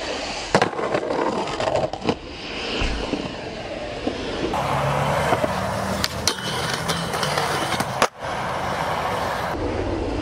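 Skateboard wheels rolling on concrete, with several sharp pops and slaps of the board as tricks are popped and landed.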